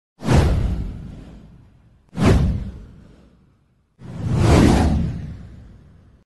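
Three whoosh sound effects for a title-card animation. Each is a swish with a deep low end that fades away over about a second and a half. The first two hit suddenly, and the third swells in more gradually.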